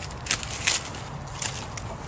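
A few brief crackles and rustles of tough, leathery hellebore leaves being handled and trimmed off with a cutting tool.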